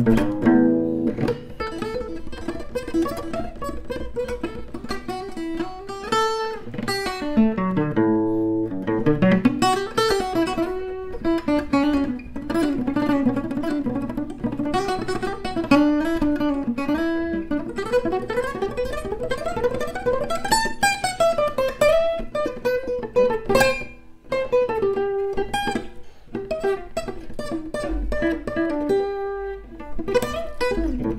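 Acoustic guitar played solo: runs of single notes, slides and chords, with a short break about 24 seconds in. It is an inexpensive guitar whose string action is very high.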